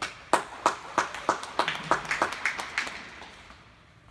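Spectators clapping for a skater: first single steady claps about three a second, then a denser patter of several people's hands, dying away about three seconds in.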